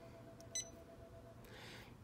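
Janome Memory Craft 550E touchscreen giving one short, high beep as an on-screen button is pressed.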